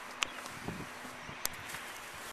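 Steady outdoor background noise, a faint even hiss, with two brief sharp clicks, one near the start and one about a second and a half in.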